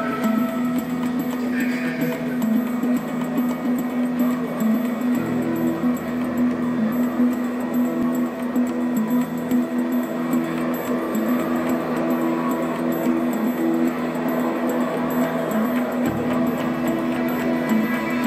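Background music of long held low notes, with the harmony shifting a few times.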